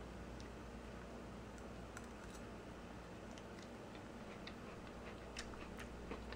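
Quiet room tone with a few faint, irregular light clicks of a metal fork against a bowl during eating.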